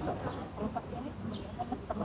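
Faint outdoor background with a few short, faint pitched sounds.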